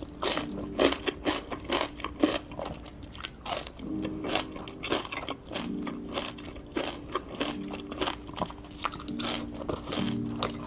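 Close-miked eating sounds: crisp crunching bites and chewing, several sharp crunches a second, with a few short low hums in between.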